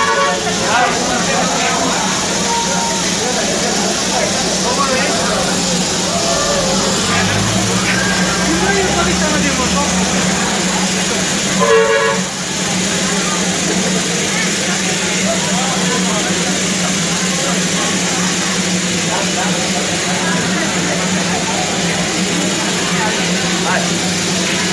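Darjeeling Himalayan Railway steam locomotive standing in steam, giving off a steady hiss with a low hum under it, and one short whistle toot about twelve seconds in.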